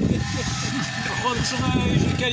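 Men's voices talking over one another, with no single clear speaker.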